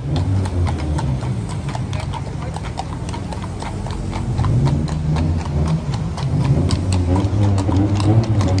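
Carriage horses' hooves clip-clopping on asphalt as horse-drawn carriages pass at a walk, a quick run of sharp strikes throughout. Underneath is a low, steady rumble of street traffic.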